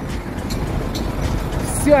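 Steady low rumble of outdoor street traffic, with no words until a voice starts near the end.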